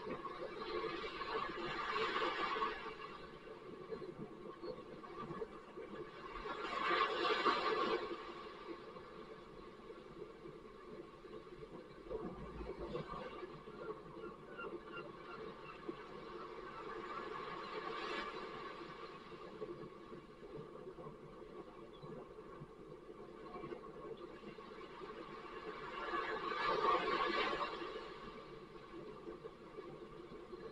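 Small sea waves washing up a beach, the surf noise swelling and fading four times.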